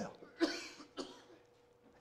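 A single cough about half a second in, followed by a faint short click about a second in.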